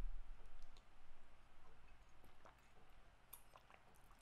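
Quiet room with faint soft knocks that fade away over the first two seconds, then a few light clicks.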